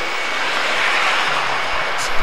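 Road traffic going by, a steady hiss of tyres on wet pavement that swells about a second in and then holds.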